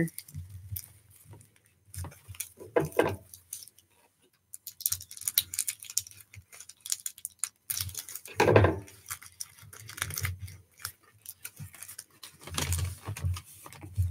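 Thin plastic envelope-window film crinkling and tearing as it is picked and peeled away from the paper, with paper rustling, in irregular crackly bursts and a louder burst a little past halfway.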